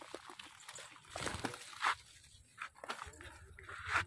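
Irregular rustling and crackling, with faint voices in the background.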